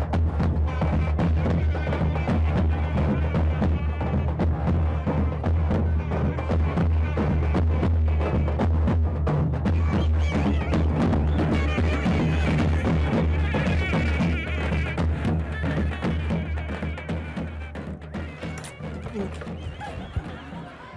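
Davul drums beaten in a steady dense rhythm with a melody line playing over them, easing off in the last few seconds.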